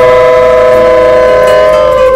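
Conch shells (shankha) blown during the blessing, two horns holding long steady notes at two different pitches at once.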